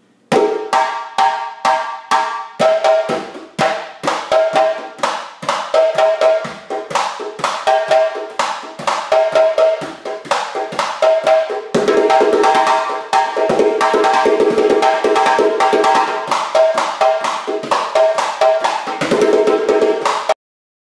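Djembe solo played with bare hands: sharp slaps and ringing tones in a fast rhythm. About twelve seconds in, the strokes crowd together into a dense, rapid roll.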